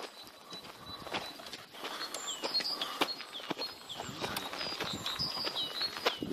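Footsteps on a gravel-strewn dirt path, an irregular run of short scuffs, with small birds chirping repeatedly in the background.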